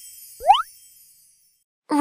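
Cartoon sound effects: the tail of a sparkly chime jingle fading away, and a single quick rising 'bloop' about half a second in.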